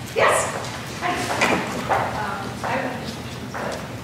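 A person's voice speaking indistinctly, with a short, louder sound right at the start.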